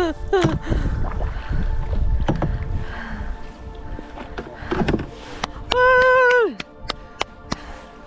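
Canoe paddling with low water and wind rumble and several sharp knocks of the paddle against the canoe's hull, over background music. Near the three-quarter mark a loud, held, pitched tone sounds for about a second and drops in pitch as it ends.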